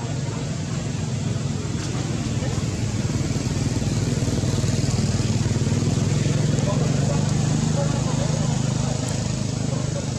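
A motor engine running steadily as a low hum, growing a little louder toward the middle and easing off near the end.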